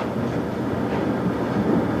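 Steady rushing background noise, even and unbroken, with no clear source.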